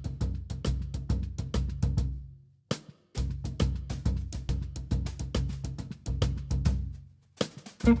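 Drum kit played with sticks in a fast run of strokes, about five a second, over a deep sustained drum boom. The playing breaks off briefly twice, about two and a half seconds in and again near seven seconds.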